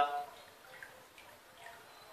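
A man's voice trails off at the very start. Then there are faint water sounds and a couple of small clicks as a small pump is handled in a basin of water.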